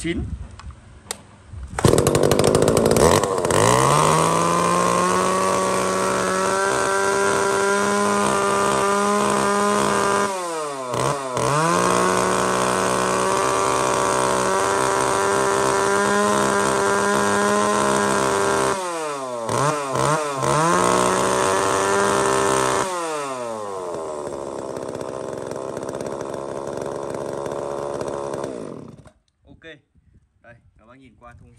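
Echo (Kioritz) CS-3000 32cc two-stroke chainsaw starting about two seconds in and revving up to hold a steady high speed. Its revs dip and pick up again briefly near ten seconds in and several times around twenty seconds in. It then drops to a lower, quieter running speed and stops shortly before the end.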